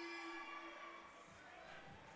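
Faint background: a single steady tone fades away within the first second, leaving low hall noise.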